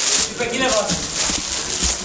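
A man's voice speaking briefly, over background music.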